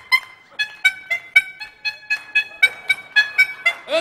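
Rubber-bulb squeeze horns sewn all over a costume (a "klaxophone") honked one after another to play a quick tune: short notes at about four a second, each at a different pitch.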